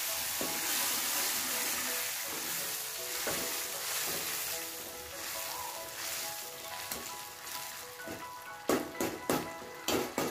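Greens, spices and sambar powder sizzling in hot oil in a metal kadai while a metal ladle stirs them. The hiss slowly fades, and near the end the ladle knocks sharply against the pan a few times.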